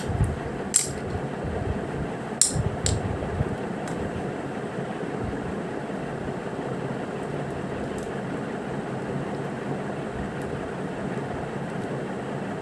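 Steady hum of a room fan, with a few sharp light clicks and clinks in the first four seconds and one more about two-thirds of the way through.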